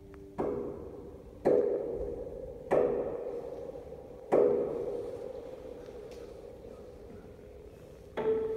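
Grand piano: four loud chords struck one after another, a second or more apart, each left to ring and fade. The last chord dies away slowly through the second half.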